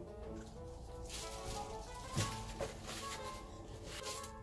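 Quiet background music with steady held notes, with a few brief rustles of paper packing being handled in a cardboard box.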